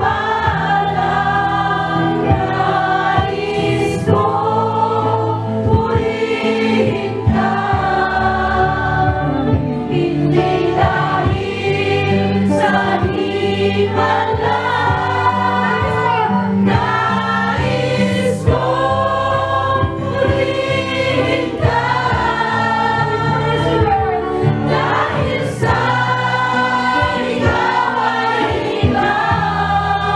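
Christian worship music: a choir singing a gospel song over steady instrumental backing.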